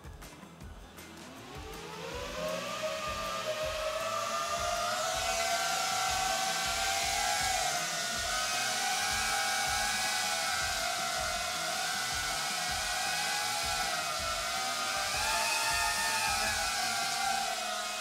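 Small FPV drone with ducted propellers spinning up to take off: its motors' whine rises steeply in pitch over the first couple of seconds, then holds as a steady hovering whine that wavers slightly in pitch as the pilot keeps correcting with the sticks.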